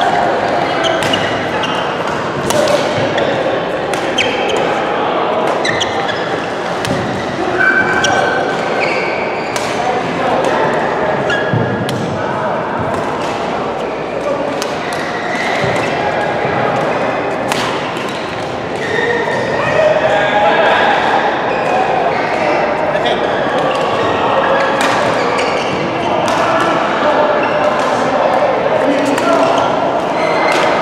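Badminton rackets striking shuttlecocks in rallies, sharp clicks again and again, over the steady chatter of players in a large echoing sports hall.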